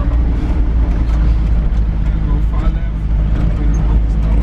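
Steady low rumble of a moving car, engine and road noise heard inside the cabin.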